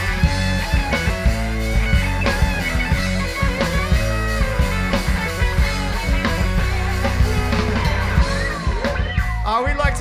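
A rock band playing live with electric guitars, bass, drums and keyboards, with steady drum hits throughout. The bass and drums drop out briefly near the end.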